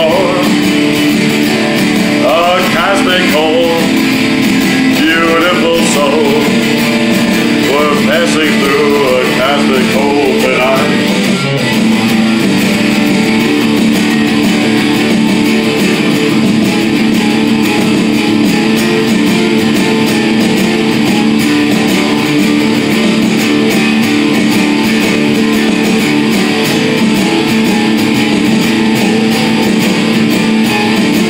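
Electric guitar playing an instrumental break in a rock song: a lead line with bending notes for the first ten seconds or so, then steady held chords for the rest.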